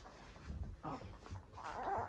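A baby makes faint short vocal sounds while being spoon-fed, about a second in and again near the end.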